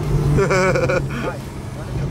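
Porsche 911 Carrera S flat-six engine running steadily while the car cruises, heard from inside the cabin. A person's voice cuts in briefly about half a second in.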